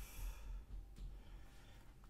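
Faint sigh or exhaled breath in an otherwise quiet room.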